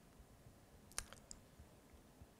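Near silence, broken about a second in by one sharp click and two fainter ticks just after it.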